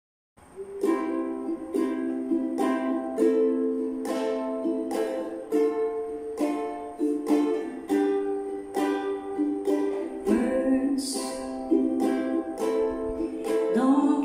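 Ukulele strummed in a steady rhythm, playing the song's intro chords C, Am, Dm and G, starting about half a second in.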